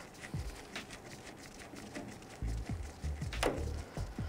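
Phillips head screwdriver snugging a taillight mounting screw into the truck's sheet-metal bed pillar: scattered light clicks and a run of low knocks, with one brief falling squeak near the end.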